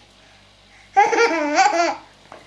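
A baby laughing: after a quiet moment, one drawn-out, wavering laugh about a second in.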